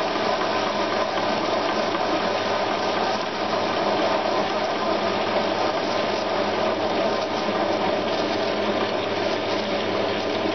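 CQ9325 metal lathe running under a heavy facing cut, its carbide tool feeding across the end of a 42 mm steel bar. The sound is an even, unbroken machine hum with several held tones and a noisy cutting hiss over it.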